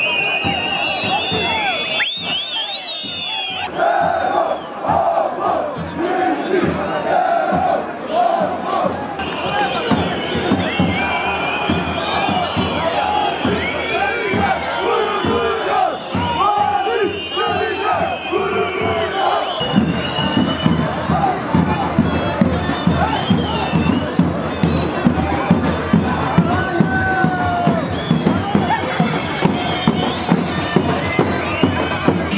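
A large crowd shouting and chanting slogans. About two-thirds of the way through, a steady beat of about two strokes a second joins in.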